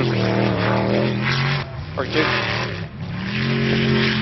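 Jet sprint boat engine running hard around the course, steady, dipping briefly past the middle and then climbing in pitch again as it picks up.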